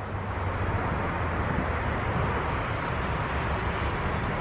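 Steady outdoor background noise with a low rumble, swelling slightly in the first half-second and then holding even.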